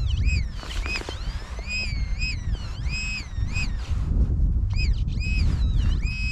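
Metal-detecting pinpointer (XP MI-4) beeping as it is worked through loose soil in a dig hole: a run of short electronic tones that swoop up and fall again in pitch, the signal of the probe closing in on a buried metal object. A low rumbling noise lies underneath.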